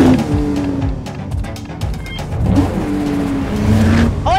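Car engine revving twice over background music: each rev climbs in pitch, then holds briefly.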